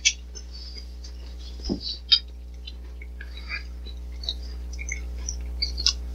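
Quiet chewing and mouth noises from people eating custard tart: small wet clicks and smacks scattered throughout, with one soft knock a little under two seconds in. A steady low electrical hum runs underneath.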